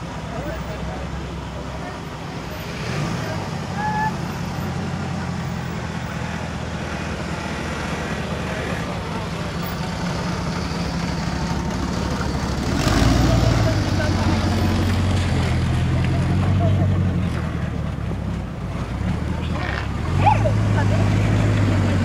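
Ford LTD Crown Victoria police-car replica's V8 running as the car drives slowly past, a steady low engine note that grows louder about halfway through and again near the end.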